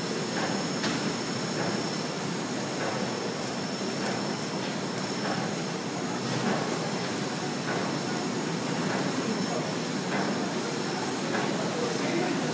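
PP woven-bag tape extrusion line running steadily, its motors and rollers giving an even mechanical noise with a thin, steady high-pitched whine on top.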